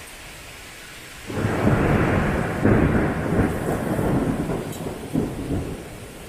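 A thunderclap breaks out a little over a second in and rumbles loudly for about four seconds before dying back, over the steady hiss of a torrential downpour.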